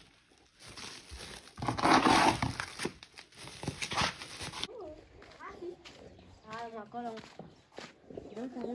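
Dry pearl millet (mahangu) grain and a woven plastic sack rustling and crinkling as they are handled and the sack is gathered up, loudest about two seconds in and stopping before the five-second mark.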